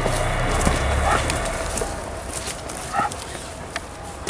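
Footsteps of several people walking on a dirt woodland path, heard as scattered short knocks. There is a low rumble in the first two seconds and a brief pitched sound about three seconds in.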